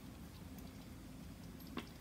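Quiet kitchen room tone with a low steady hum, and one small click near the end.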